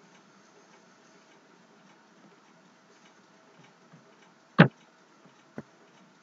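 Two computer mouse clicks over a faint steady hiss: a sharp, loud one about four and a half seconds in and a fainter one a second later.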